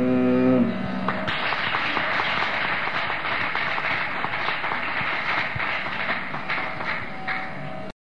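The last held note of a Carnatic vocal performance dies away in the first second, then audience applause starts a little over a second in and carries on until it cuts off suddenly near the end.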